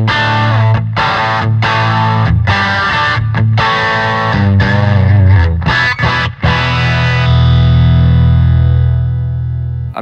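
Electric guitar played through a Blackstar St. James valve amp with overdrive: choppy chords broken by short gaps, then a final chord held and left ringing from about seven seconds in, which cuts off suddenly at the end.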